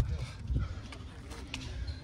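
Faint scraping and a few light knocks of a hand digging through clay and rock in a crystal pocket, over a low rumble.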